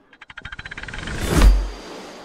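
Animated-logo sound effect: a rapid run of ticks that speeds up into a rising whoosh, peaking in a deep boom about a second and a half in, then fading with a lingering tail.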